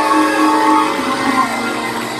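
Church music: long, steady chords held on a keyboard instrument.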